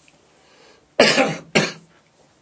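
A man coughing twice into a close microphone: a sharp cough about a second in and a shorter one half a second later.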